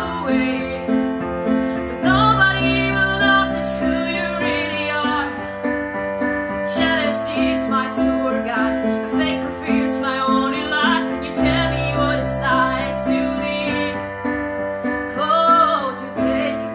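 A woman singing over her own electronic keyboard accompaniment, set to a piano sound. A low note figure repeats about twice a second over held bass notes while her voice glides between pitches above it.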